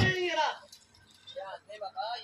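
A short, high-pitched human voice falling in pitch in the first half second, then faint, choppy voices talking at a distance.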